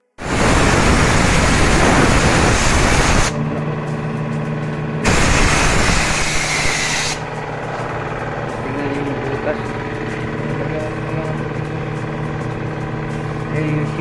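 Compressed air blasting from an air blow gun into a car's engine bay at the radiator: a loud hiss of about three seconds, then a second of about two seconds, over a steady engine hum.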